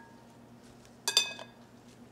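Metal serving spoons clinking in a glass salad bowl as a salad is tossed: two quick, bright clinks about a second in that ring briefly.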